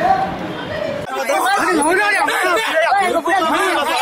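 People talking at once: several voices and chatter. About a second in, the voices turn clearer and closer.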